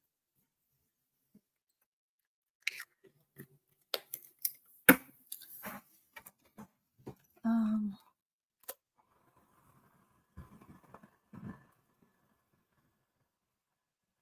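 Scattered light clicks and knocks of small jars and bottles being picked up and set down on a tabletop, starting about three seconds in.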